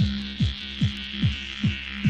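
Techno DJ mix: a pounding kick drum on every beat, about two and a half beats a second, over a steady low drone, with a hissing sweep that slowly falls in pitch.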